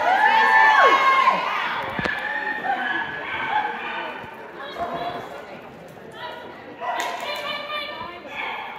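People calling out in a large, echoing hall, starting with one long drawn-out call and followed by fainter voices. There is a single thud about two seconds in.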